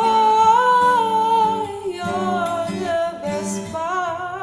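A woman's voice singing a long held note and then a few lower notes with vibrato, over an acoustic guitar.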